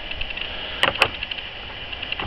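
Two sharp clicks close together about a second in: stone knocking against stone as a hand sets a rock sample down among other rocks.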